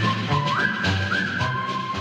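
Intro theme music: a whistle-like lead melody of single held notes stepping up and down over bass and a steady beat.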